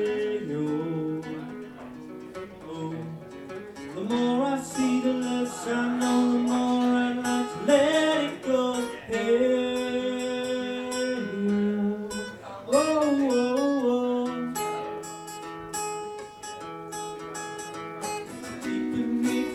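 A man singing long held notes, sliding up into several of them, over a strummed acoustic guitar.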